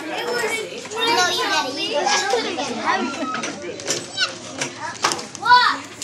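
Many young children talking and chattering at once, with one child calling out loudly about five and a half seconds in.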